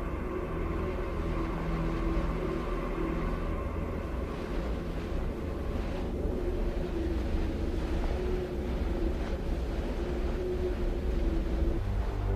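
Low, sustained drone of a suspense film score: steady held tones over a constant low rumble.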